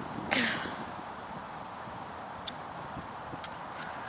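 A short breathy laugh, then steady outdoor background hiss with two sharp clicks about a second apart in the second half.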